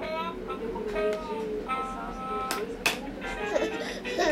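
Baby's electronic musical activity table playing a tinny electronic melody of short notes and held tones, with two sharp knocks past the middle.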